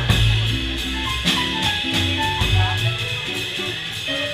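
A small live jazz band playing, with electric guitar and a drum kit keeping time on cymbals.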